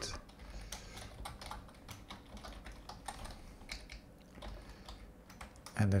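Typing on a computer keyboard: an irregular run of quick key clicks.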